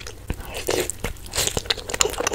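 Close-miked eating sounds: a person chewing and biting food, with irregular sharp crunchy clicks.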